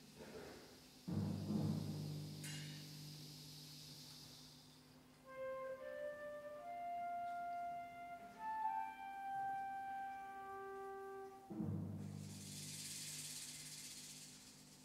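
School wind band playing a quiet, sparse opening: a low drum strike about a second in that rings on, then a slow line of single held high notes, then a second low strike near the end followed by a high shimmering wash.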